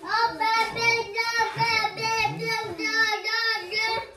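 A young child's voice vocalising in a sing-song way: long, high, fairly level notes with short breaks between them, wordless.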